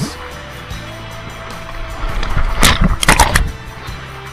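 Background music with steady held notes, over rushing water of a tube chute ride. A louder burst of splashing against the camera comes a little under three seconds in.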